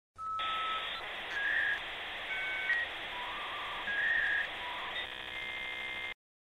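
Electronic logo-intro sound effect: a steady hiss carrying a string of short beeps at changing pitches. It ends in a buzzy chord-like tone for the last second that cuts off suddenly.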